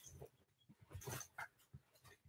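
Near silence: room tone, with one faint brief sound about a second in.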